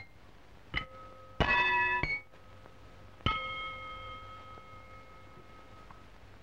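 Cartoon sound effect of struck, bell-like ringing tones. A short ding comes about a second in, then a louder chord of several ringing notes that stops abruptly half a second later. A single strike follows at about three seconds and rings on, slowly fading. Underneath is the faint hum and hiss of an early optical film soundtrack.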